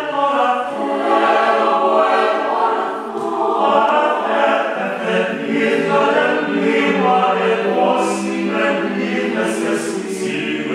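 Mixed choir of young men's and women's voices singing a cappella in several parts. The lowest voices rest at first and come back in about halfway through.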